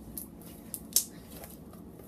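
Slime stiffened and made chunky by kneaded-in toilet paper, being squeezed and pulled by hand. It gives a few sharp clicks and pops, the loudest about a second in.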